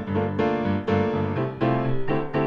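Background piano music, a string of struck notes over sustained low chords.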